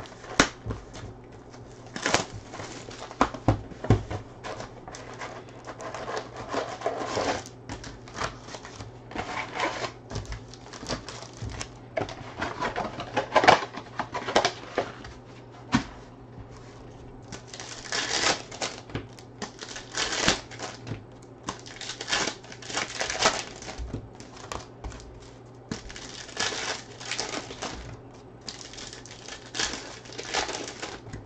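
Panini Contenders Football hobby box and foil card packs being handled and opened by hand: irregular crinkling and tearing of pack wrappers mixed with sharp clicks and taps of cardboard.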